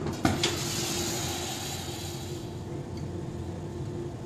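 Gas torch hissing for about two seconds as its flame is played on the hot glass, then fading out, after a few sharp clicks just before it. A steady low hum runs underneath.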